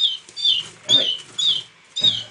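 A young canary chick about three weeks old chirping repeatedly while held in the hand: short high chirps, each sliding slightly down in pitch, about two a second.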